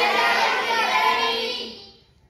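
A class of children answering together in unison, one long drawn-out chorus of voices, fading away near the end.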